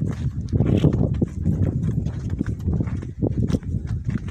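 Footsteps crunching on stony dirt ground, irregular knocks over a steady low rumble of wind on the phone's microphone.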